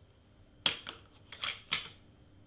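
A handheld hot glue gun set down with a few sharp plastic knocks: one loud knock about half a second in, then two more close together near the end.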